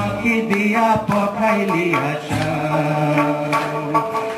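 Live Bengali folk-rock band playing, with electric guitars, bass and drum kit under a sung vocal line of long, held notes, and a few sharp drum hits.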